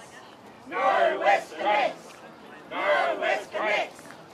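Protest marchers chanting a slogan, two chanted phrases about two seconds apart with short pauses between.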